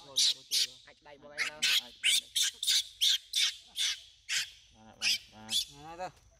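Baby long-tailed macaque screaming in a rapid run of short, high shrieks, about two to three a second, while held down by a person's hands. The cries are distress calls at being restrained and handled, and they stop at the very end.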